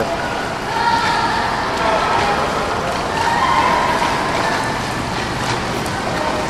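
Steady wash of indoor swimming-pool noise: water splashing and churning from a swimmer's freestyle strokes, with faint distant voices echoing under it.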